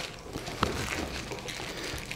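Small plastic zip bags of wax dye chips and a cardboard box's flaps rustling and crinkling as they are handled, with a faint click a little over half a second in.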